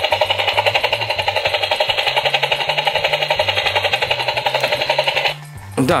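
Lanard The Corps toy helicopter's battery-powered sound effect playing through its small speaker: a fast, steady electronic rotor chopping, about nine pulses a second, triggered by its button. It cuts off about five seconds in.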